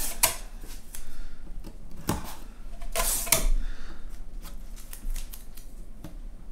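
Binding tape pulled off a heavy shop tape dispenser and torn off, with softer rasping from the unrolling tape between a few sharp clicks and taps. The loudest of these comes about three seconds in.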